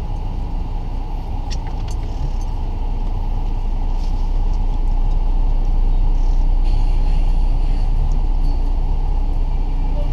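Steady low road rumble of a car driving on a highway, heard from inside the cabin: tyre and engine noise, growing a little louder partway through as it moves up alongside a tour coach. A few faint ticks sound about two seconds in.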